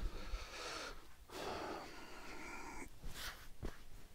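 Faint rustling of a cloth rag being picked up and handled, in two soft stretches, with a few light clicks near the end.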